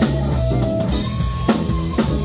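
Live funk band playing: electric guitar, bass guitar, drum kit and keyboard, with regular drum hits under held notes.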